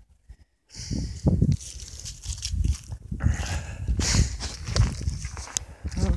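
Irregular rustling and knocking of a phone being handled and moved about close to its microphone, starting about a second in after a brief near-silent moment.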